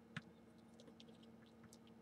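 Near silence with faint clicks of a plastic action figure being twisted at the waist in the hands. One sharper click comes just after the start.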